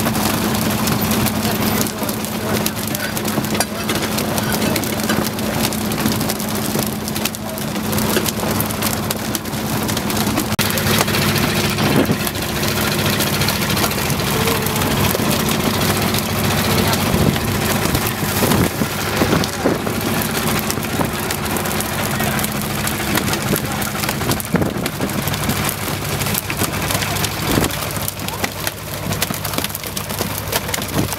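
A heap of freshly landed dolphinfish and tuna flapping and slapping on a wet boat deck and against each other: a dense, continuous patter of wet slaps. A steady engine hum runs underneath and drops away about halfway through.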